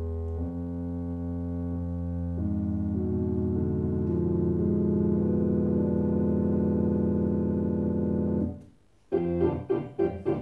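Organ playing long held chords that change a few times and swell slightly, then stop abruptly near the end. A different, pulsing sound starts just after.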